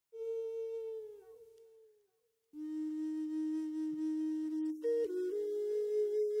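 A flute playing slow, long-held notes: a first note that fades and dips slightly in pitch, a short pause, then a lower note held for about two seconds before the melody steps higher.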